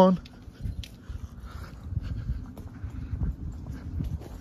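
Uneven low rumble of wind on a handheld phone microphone during a walk along an outdoor path, with a few faint clicks.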